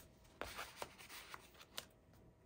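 Faint handling of paper and cardstock: a few soft taps and rustles as the pages and loose cards of a handmade scrapbook album are moved.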